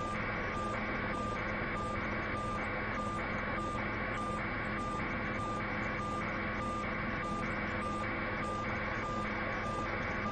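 A repeating electronic alarm beeping evenly, a little under two beeps a second, over a constant rumble.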